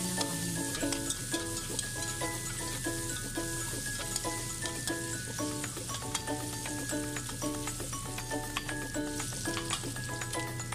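Sliced pork, onion and green chilies sizzling in an aluminium wok while a metal spatula stirs and scrapes the pan, with scattered clicks of the spatula on the metal. A light background music tune of short repeated notes plays underneath.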